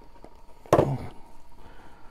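A single sharp knock about three-quarters of a second in, followed by faint rustling as toy packaging and a paper insert are handled.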